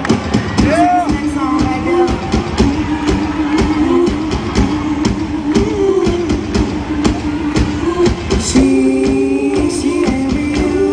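Live concert music: a band playing a steady beat under long held notes, with a woman singing into a microphone.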